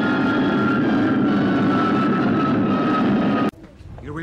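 Film sound effect of a rocket launching: a loud steady roar with a high whistling tone that slowly falls in pitch, cutting off suddenly about three and a half seconds in.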